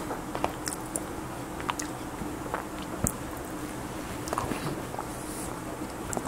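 A man chewing food close to a clip-on microphone, with scattered small wet mouth clicks over a faint steady hum.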